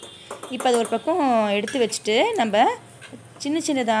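Stainless steel lid clinking a few times against a small steel pan as it is lifted off, near the start, followed by a woman talking.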